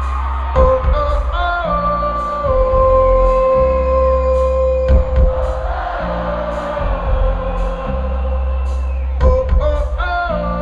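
Live band playing a pop-rock song while a large arena crowd sings along, long notes held over steady bass and drums.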